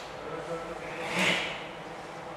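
Martial artists exhaling forcefully together as they move through a kung fu form: a sharp breath rush about a second in.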